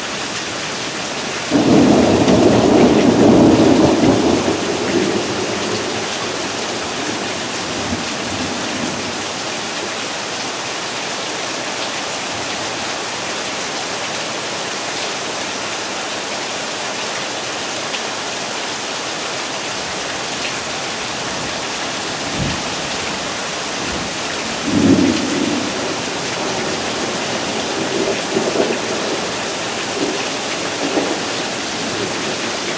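Steady spring rain falling, with a loud rumble of thunder starting about a second and a half in that dies away over a few seconds. A shorter, fainter rumble comes near the end.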